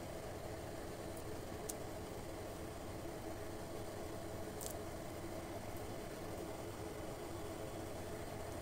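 A steady low hum with a faint hiss underneath, and two faint ticks, one about two seconds in and one near five seconds.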